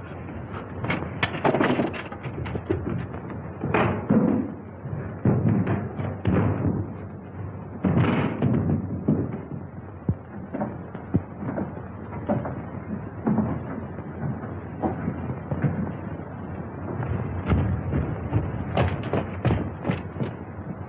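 Thuds and knocks at irregular intervals, some sharp and loud, with a faint layer of music underneath.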